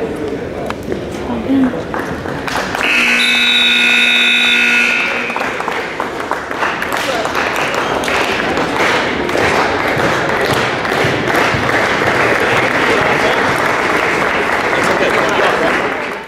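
Gym scoreboard buzzer sounding one steady tone for about two and a half seconds, marking the end of the wrestling bout, followed by the crowd in the bleachers applauding and cheering until the end.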